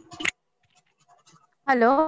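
A brief scratchy rustle on a video-call microphone, followed by faint crackles; then, near the end, a woman's voice says "hello".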